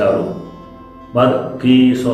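A man's voice reading aloud in Khasi over soft background music with guitar. The voice pauses for about half a second in the middle and then goes on.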